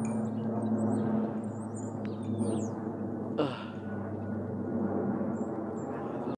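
A four-engine turboprop airplane passing overhead: a steady, low droning hum from its propellers and engines.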